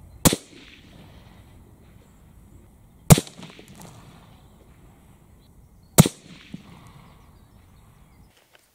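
Three shots from a moderated Benelli Lupo bolt-action rifle in 6.5 Creedmoor, evenly spaced about three seconds apart, each a sharp report with a short echo.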